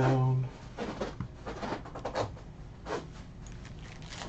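A short hum of a voice at the start, then a sports-card pack being handled: a run of short, irregular taps and crinkles from its plastic wrapper. The pack is being knocked against the table to settle the cards before it is torn open.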